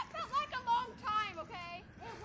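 A high-pitched voice making several short wordless cries or laughs, its pitch bending up and down.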